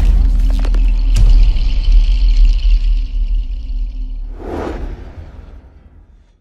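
Cinematic intro sound design: a loud, deep bass rumble with a faint high shimmering ring above it and a sharp hit about a second in, then a whoosh near the end as it all fades out.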